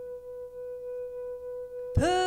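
One steady instrumental note held between sung lines of a slow country ballad. A new chord slides in right at the end.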